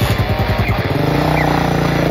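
Motorcycle engine running with a fast, even pulse, mixed with background music.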